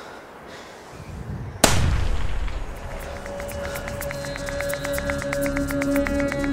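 A single gunshot, sharp and echoing, about a second and a half in, the loudest thing here. About a second later music sets in, with held low tones and a fast, even ticking pulse.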